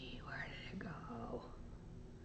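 Soft whispered speech: a woman murmuring under her breath as she reads.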